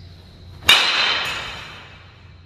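2022 DeMarini The Goods two-piece hybrid BBCOR bat striking a pitched baseball once, about two-thirds of a second in: a sharp metallic crack with a ringing tail that fades over about a second.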